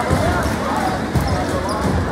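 Basketball bouncing on a hardwood gym floor a few times, amid crowd chatter and voices.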